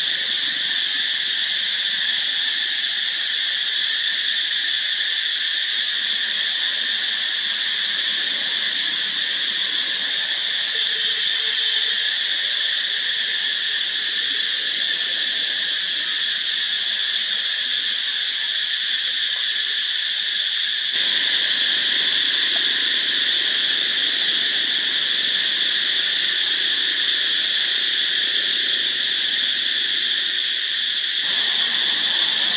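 Steady, high-pitched insect chorus: a continuous drone in several layered pitches with no break, slightly louder from about two-thirds of the way through.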